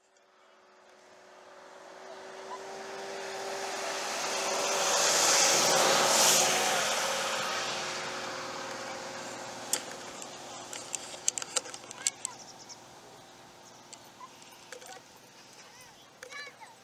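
A vehicle going by: its road noise swells to a peak about six seconds in, then slowly fades away. A few sharp clicks and taps follow.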